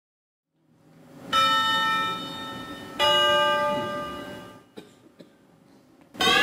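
Two bell strikes about a second and a half apart, each ringing out with many overtones and fading slowly. A low swell rises just before the first strike.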